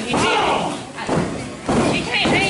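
Shouted voices echoing in a large hall, with a heavy thud on the wrestling ring about three-quarters of the way through.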